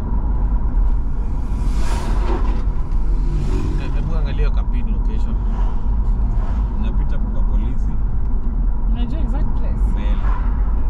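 Steady low rumble of a car driving along a highway, heard from inside the vehicle, with indistinct voices in the cabin.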